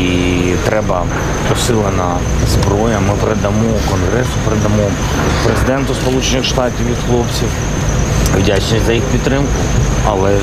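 A man speaking at length to a small group, over a steady low rumble and a faint steady high whine.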